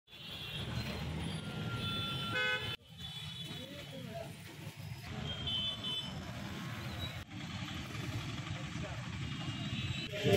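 Jammed street traffic of cars, motorcycles and auto-rickshaws: a steady engine rumble with several short horn toots.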